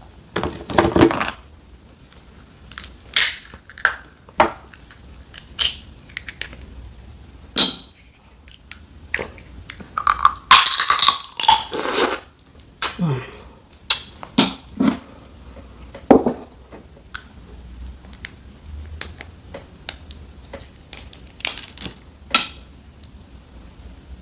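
Boiled snow crab leg shells being cracked and snapped apart by hand: a series of sharp, separate cracks. A little before halfway the meat is sucked out of a shell in a long slurp, with some chewing.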